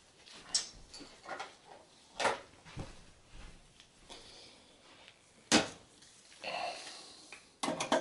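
Faint, scattered clicks and knocks of a graphics card being handled and fitted into a desktop PC's PCI Express x16 slot, the sharpest click about five and a half seconds in.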